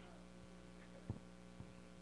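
Near silence in a pause of speech, with a steady low electrical mains hum and one faint click about a second in.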